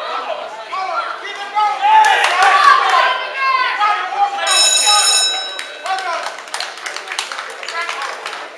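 Spectators shouting and cheering at a boxing bout, with the ringside bell ringing once for about a second about halfway through to end the round, after which the boxers separate.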